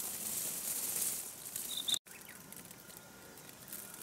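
Quiet outdoor ambience in mountain brush: a soft, even high hiss with a brief high bird chirp about two seconds in. The sound then cuts off abruptly and resumes as a quieter background.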